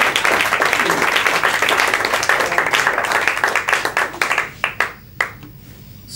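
Small audience applauding with dense clapping, thinning to a few last scattered claps about four and a half seconds in before it dies away.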